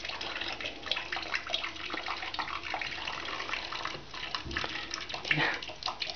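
Kitchen mixer tap running a thin stream that splashes off a hand and into a stainless-steel sink of dishwater, an uneven trickle with scattered drips and splashes. A louder bump comes near the end.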